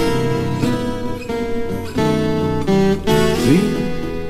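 12-string acoustic guitar playing a blues instrumental break between verses, picked and strummed notes with a note sliding upward near the end.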